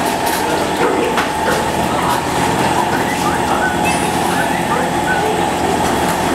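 Roller (calendar) heat transfer sublimation machine running: a steady mechanical hum with a constant tone from its heated drum and conveyor belt. A few faint clicks come in the first second.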